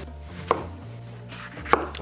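Kitchen knife cutting citrus fruit in half, the blade knocking down onto a wooden counter twice, a little over a second apart.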